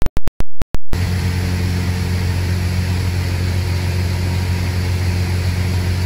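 A rapid run of short clicks in the first second, then the steady drone of a single-engine light aircraft's engine and propeller heard inside the cabin in cruise flight.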